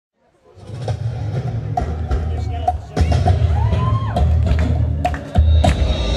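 Music with a heavy bass and sharp drum strikes, fading in from silence within the first second.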